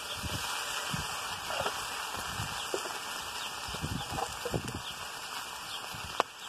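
Green beans frying in bacon grease on a hot skillet over a wood fire: a steady sizzling hiss with scattered small crackles.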